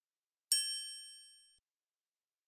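A single bright, bell-like ding about half a second in, ringing out and fading over about a second: a logo sting sound effect.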